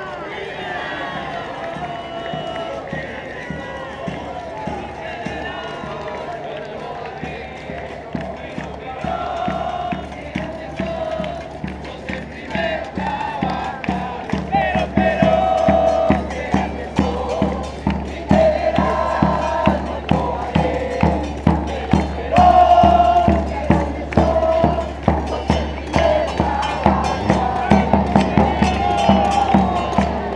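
Street parade sound: crowd noise and voices, joined about seven seconds in by a steady drum beat that grows louder, with a crowd of voices singing or chanting over it in long phrases.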